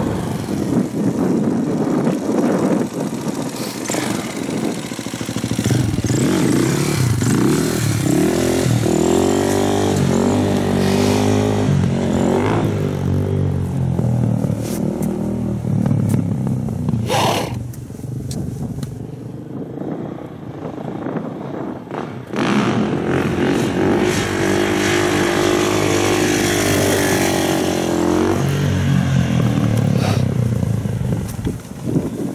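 Supermoto motorcycle engine revving up and down as it is ridden around, pitch rising under acceleration and dropping off between pulls. It goes quieter for a few seconds past the middle, then comes back up.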